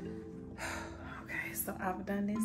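Soft background music with long held notes, with a woman's breathy, whispered voice over it.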